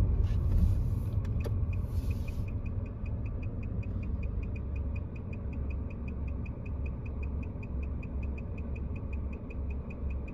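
Car engine running, heard from inside the cabin, with short rustling noise in the first couple of seconds; from about two and a half seconds in, a turn signal ticks at a steady even rate.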